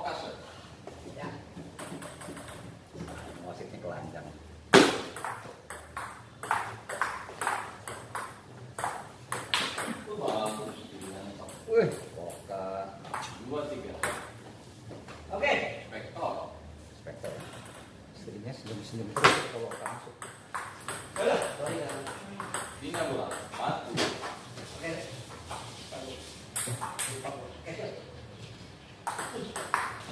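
Table tennis rallies: the ball clicks sharply off the paddles and bounces on the table in quick runs of hits, with the loudest cracks about five, twelve and nineteen seconds in. Men's voices talk between points.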